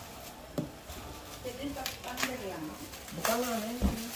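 Indistinct voices talking, with light crinkling and short knocks as an item is unwrapped from tissue paper and handled in a cardboard box, and a low thump near the end.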